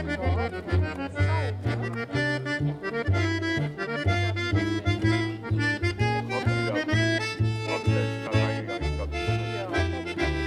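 Live acoustic gypsy-swing music: an accordion plays the melody and chords over a plucked upright double bass walking steadily at about two notes a second.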